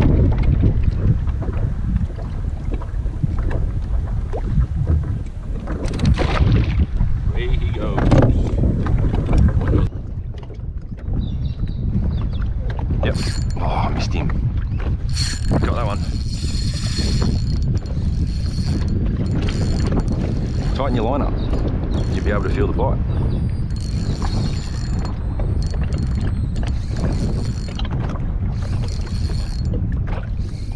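Wind buffeting the microphone and water against a kayak hull, a steady rumble. From about a third of the way in, short repeated bursts of high mechanical whirring come and go.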